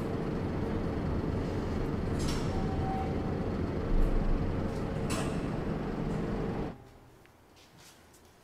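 Lift car running: a steady mechanical hum and rumble with a couple of sharp clicks and a short beep in the middle. It cuts off abruptly near the end.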